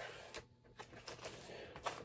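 An LP record and its cardboard jacket being handled and lowered: faint rustling with a few soft clicks.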